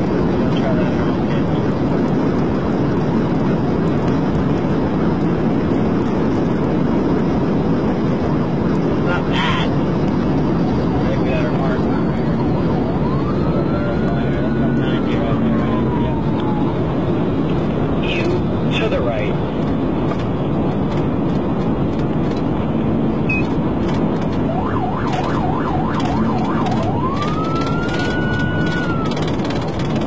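Loud, steady wind and road noise inside a Florida Highway Patrol car travelling at over 100 mph and slowing. A siren wail rises and falls faintly over it twice, about halfway through and near the end.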